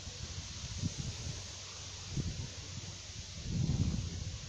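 Wind buffeting the microphone in irregular low gusts, the strongest near the end, over a steady outdoor hiss of rustling leaves.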